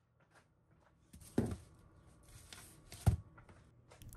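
Metal sheet pan of baked biscuits being set down on a woven placemat: a soft knock about a second and a half in and a sharper, louder knock about three seconds in, with faint handling rustle between.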